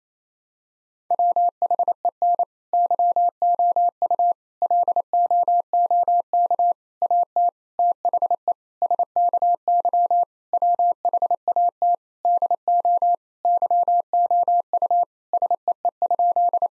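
Morse code tone keyed at 28 words per minute: a single steady mid-pitched beep switched on and off in dots and dashes, starting about a second in. It spells out the practice sentence "When you look at the sky what do you see?".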